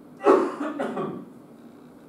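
A man coughing: one loud cough about a quarter second in, followed by a few smaller coughs over the next second.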